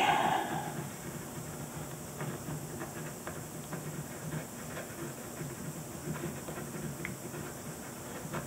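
Ballpoint pen scratching faintly on paper in short, irregular curly strokes.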